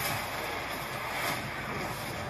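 Film-trailer sound effects of an explosion and burning at sea as a ship is blown apart: a sustained, noisy roar with a low rumble underneath.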